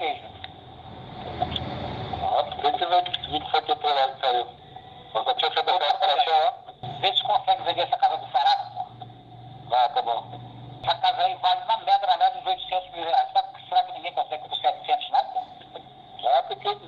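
A recorded telephone call: two men talking in Portuguese, the voices thin and narrow as heard through a phone line, with a burst of line hiss about a second in.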